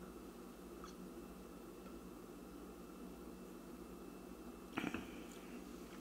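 Quiet room tone with a faint steady hum, and a short soft knock about five seconds in: a beer glass being set down on a coaster on the bar top.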